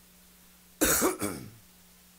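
A short vocal burst, like a throat clearing, about a second in, lasting well under a second, over a faint steady low hum.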